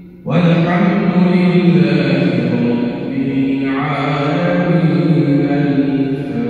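A man's voice reciting the Quran in melodic tajweed style, coming in suddenly a moment in and holding long notes that shift slowly in pitch.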